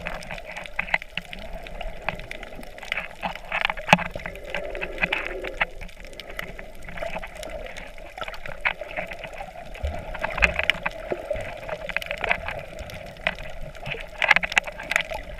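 Underwater sound picked up by a camera held below the surface: water moving and bubbling in recurring swells, with many sharp clicks scattered throughout.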